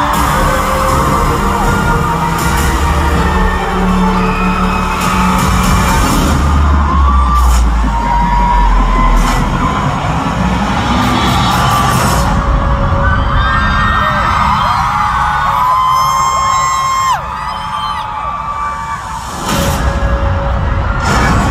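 Loud concert PA music with heavy bass, heard through a crowd of fans screaming and cheering over it. Near the end one high scream is held for about a second, then the sound drops back for a couple of seconds before rising again.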